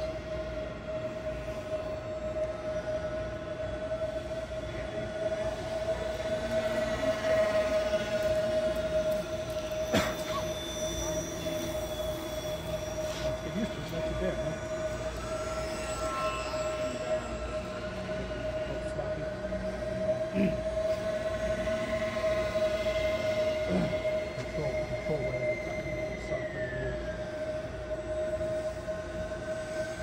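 Twin small brushless electric motors and propellers of a 28-inch foam RC Mosquito model whining in flight, several pitches drifting up and down with the throttle, with a clear drop in pitch near the end. A steady hum runs underneath, and there is a single sharp click about ten seconds in.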